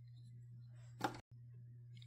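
Handling noise from nylon starter rope and a plastic recoil-starter pulley: one short scrape about a second in, over a faint steady low hum. The sound briefly drops out just after the scrape.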